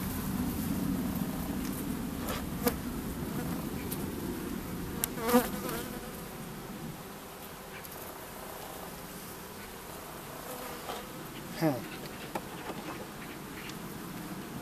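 Honeybees buzzing around an opened hive as a comb frame is lifted out, the hum strongest in the first half and then fading. A few sharp knocks come a few seconds in, and a brief falling whine near the end.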